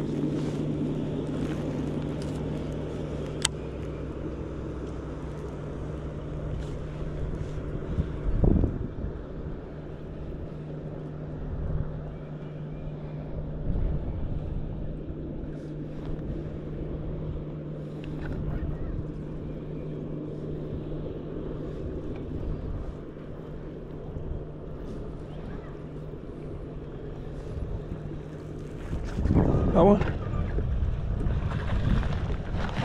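Electric trolling motor humming steadily on a boat, cutting off about two seconds before the end. A sharp click comes a few seconds in and a louder thump at about eight and a half seconds, with some wind on the microphone.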